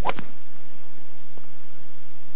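Golf club striking a teed-up ball on a drive: one sharp crack right at the start, followed by a faint click about a second and a half later.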